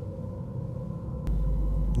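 Low background rumble and hiss with a faint steady tone; a little past a second in, a click, and a steady deep low hum sets in.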